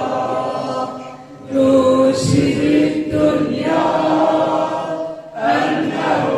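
A group of voices chanting together in long held notes, with a short break about a second in and another near the end.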